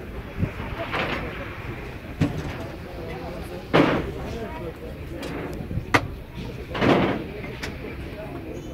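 Indistinct voices with a few sudden knocks and thumps. The sharpest is a single click about six seconds in.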